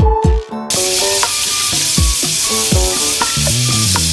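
Tap water running into a stainless steel sink, a steady hiss that starts about a second in, over background music with a beat.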